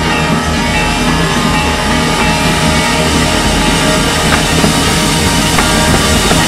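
A full drum and bugle corps playing loud: brass holding sustained chords over marching percussion and front-ensemble keyboards.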